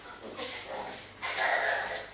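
Vocalising from an Akita puppy and a miniature schnauzer play-fighting: a short burst about half a second in, then a longer, louder one in the second half.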